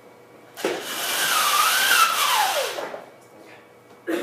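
Pull-down projection screen rolling back up onto its spring roller: a whirring rattle of about two seconds, with a whine that rises slightly and then falls as the roller slows.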